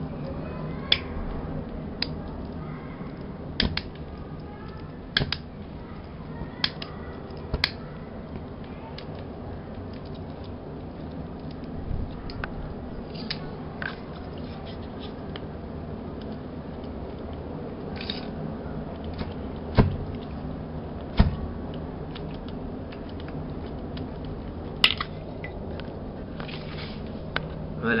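Steady low room noise with irregular sharp clicks and crackles scattered through it, the loudest two close together a little past the middle.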